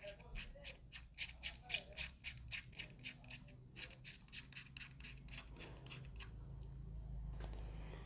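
Rapid small clicks and scrapes, about four a second, as the threaded metal battery cap of a lavalier mic's power module is turned and screwed shut by hand. They give way to fainter rustling near the end.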